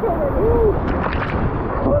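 Whitewater rapids rushing and splashing around a paddled raft, with heavy low buffeting of water and spray on the camera microphone. A cluster of sharp splash hits comes about a second in.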